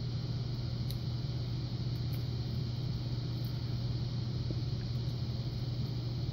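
Steady low room hum, with a couple of faint ticks from steel tweezers handling lock pins in a brass cylinder.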